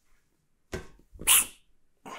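A lifter's forceful breathing as he pulls a loaded trap bar from the floor to lockout: a short breath about three-quarters of a second in, then a louder, sharp exhale around a second and a half in.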